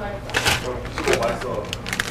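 Plastic instant-ramen packet and soup sachet crinkling and rustling in the hands, with sharp crackles about half a second in, around one second and near the end.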